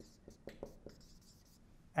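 A dry-erase marker writing on a whiteboard: a few faint short strokes and taps, mostly in the first second.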